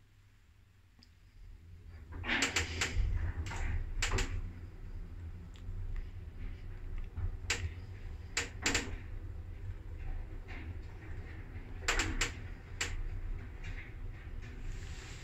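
Passenger lift with an inverter-driven drive travelling up in the shaft: a steady low hum with a series of sharp clicks and clunks from the car and shaft equipment, bunched in groups of two or three.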